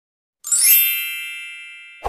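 A bright chime sound effect: about half a second in, a quick sparkling run of high notes falls in pitch and settles into a ringing chord that slowly fades.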